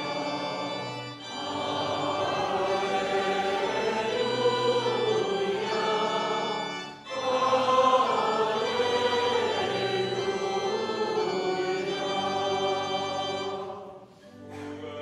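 Choir singing the Gospel acclamation in long held phrases, with short breaks for breath about a second in and again about halfway through.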